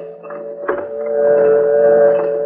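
A steady two-note drone held under the radio drama, swelling in loudness during the second half, with a single knock about two-thirds of a second in.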